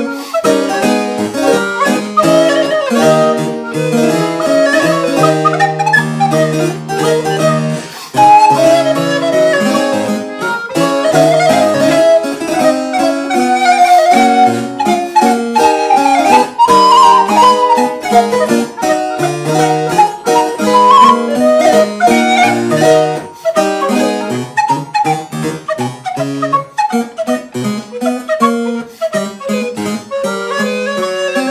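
Wooden recorder and harpsichord playing together in a fast movement of rapid, short, detached notes: the Allegro spicato finale of a Neapolitan recorder sonata, where the recorder imitates the bouncing bow strokes of a violin.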